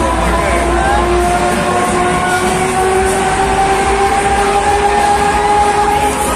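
Break Dance fairground ride running, with a long tone slowly rising in pitch over a dense, steady din.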